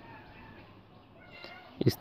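Quiet background with a faint, brief high-pitched animal call about a second and a half in; a man's voice starts right at the end.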